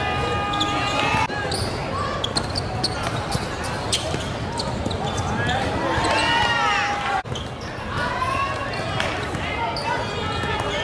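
Basketball game sound in an echoing gym: a basketball bouncing on a hardwood court, sneakers squeaking, and the voices of players and spectators. A steady pitched tone stops about a second in.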